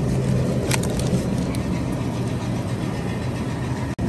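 Steady low hum and rumble of supermarket refrigerated display cases, with a couple of faint clicks about a second in and a brief dropout just before the end.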